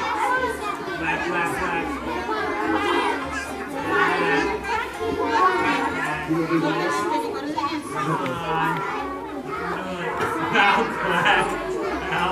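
Young children playing and chattering, many high voices overlapping with calls and squeals, in a large hall.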